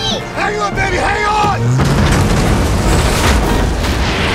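Film soundtrack of a volcanic eruption: a dense, loud rumble with booms under an orchestral score. Voices cry out in the first second and a half.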